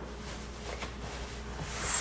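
Faint rubbing of a paper towel wiping a wooden cutting board, growing into a brushing stroke near the end, over a low steady hum.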